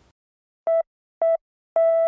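Electronic beeps of a single pitch: two short beeps about half a second apart, then a long held beep near the end. They open the news programme's theme music.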